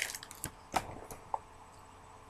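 A few light clicks and rustles from baseball trading cards being handled and flipped through, spread over the first second and a half, then quiet handling.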